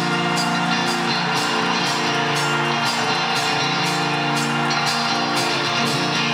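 Live rock band playing a short instrumental passage between sung lines: sustained chords over a steady drum beat of about two hits a second.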